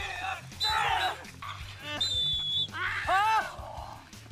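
Men shouting and yelling with effort while heaving on a tug-of-war rope, chanting "one, two, come on" in bursts, with a short high steady note about halfway through. Background music runs underneath.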